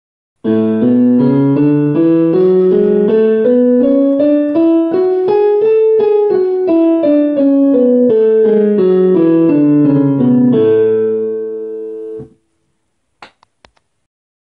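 Digital piano playing the A major scale with both hands an octave apart, two octaves up and back down in even stepwise notes, ending on a held A that cuts off suddenly. A few short clicks follow near the end.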